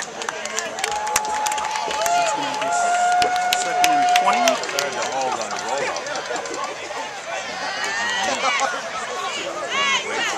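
Football crowd in the stands: sharp claps and shouts mixed together, with a few long held tones in the first half and louder shouting building near the end.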